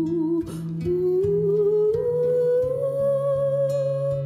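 A woman humming a slow wordless melody that climbs gradually and then holds a note, over two acoustic guitars playing chords.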